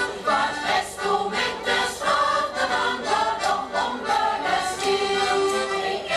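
Mixed choir of men and women singing a Low German (Plattdeutsch) song.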